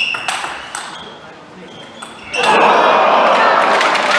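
Celluloid-type table tennis ball clicking off paddles and table in a fast rally, a few sharp hits in the first second. About two and a half seconds in, the hall crowd breaks into loud applause as the point ends.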